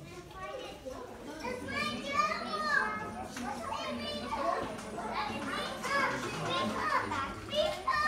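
Several children's voices talking and calling out over one another, high-pitched and without clear words.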